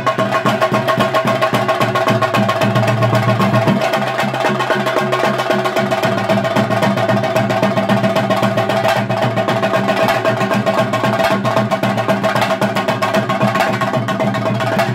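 Theyyam ritual percussion: chenda drums struck with sticks in a fast, dense, unbroken rhythm, over a steady sustained tone from a wind instrument.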